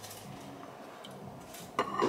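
Glassware handled while drinks are poured into coupe glasses: a quiet stretch with a faint low hum, then a single light knock of glass near the end.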